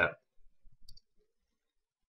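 A single soft computer mouse click about a second in, with a few faint low bumps around it; the rest is near silence.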